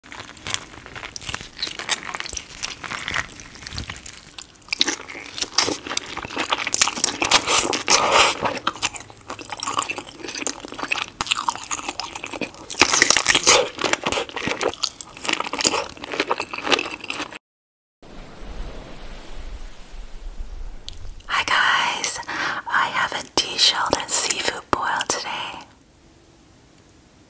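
Close-miked eating sounds: biting, chewing and wet mouth smacks of sauce-covered deshelled king crab and seafood boil. There is a brief full dropout about two-thirds of the way through, then a quieter stretch before the chewing picks up again.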